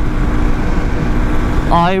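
Steady drone of a Hero XPulse motorcycle's single-cylinder engine, fitted with a 230 cc big-bore kit, cruising at highway speed, mixed with the rush of wind over the helmet microphone.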